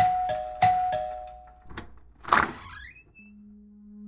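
Doorbell ringing a two-note ding-dong twice, high then low each time. A short swishing sound follows about two seconds in, and a low steady musical tone enters near the end.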